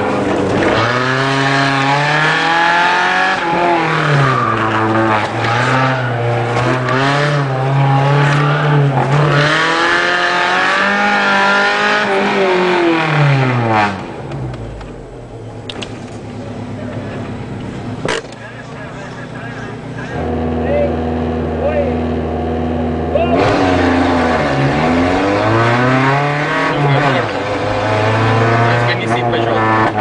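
Competition car's engine heard from inside the car, revving hard and changing gear over and over, the pitch climbing and dropping every second or two. About halfway through it eases off and runs more quietly, holding a steady low note for a few seconds, then pulls hard again through the gears.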